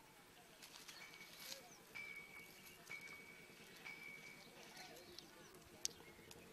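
Quiet outdoor ambience: a faint high steady tone that comes and goes about once a second, faint voices, and one sharp click near the end.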